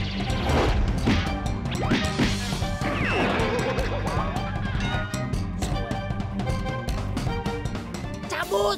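Background music with a quick run of punch and smash sound effects laid over a staged fistfight, and a falling swoop about three seconds in.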